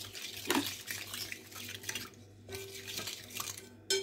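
A metal spoon stirring milk and flour in a glass bowl, with irregular light clinks and scrapes against the glass and a brief lull a little past halfway.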